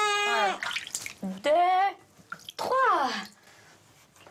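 Newborn baby crying in three wails: a long, steady one that ends about half a second in, a shorter one, then one that falls in pitch.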